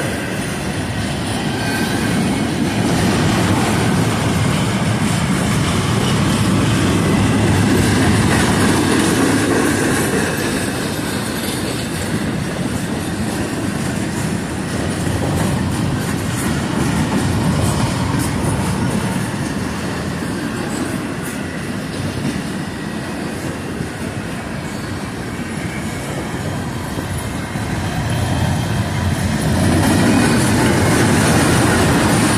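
Cars of a long CSX mixed autorack and intermodal freight train rolling past: a steady rumble of steel wheels on rail with many light clicks, swelling and easing slightly as the cars go by.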